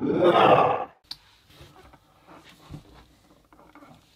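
A short, loud roar-like 'ahh' yell lasting just under a second, the second of two. It gives way to faint clicks and rustles of hands handling plastic blister packs.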